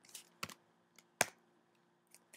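A few separate keystrokes on a computer keyboard, the loudest about a second in: a short answer being typed and entered at a terminal prompt.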